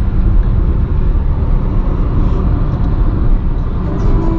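Steady low rumble of a Suzuki car driving along a highway, heard inside the cabin: road and engine noise with no sudden changes.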